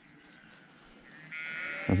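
A sheep bleating: one drawn-out, high call that starts about a second and a half in.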